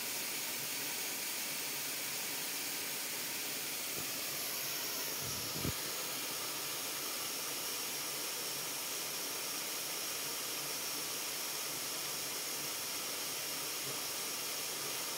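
Waterfall: a steady, even rush of falling water, heard as a constant hiss. One short low thump about five and a half seconds in.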